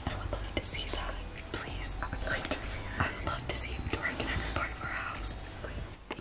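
Two people whispering to each other in hushed, breathy syllables.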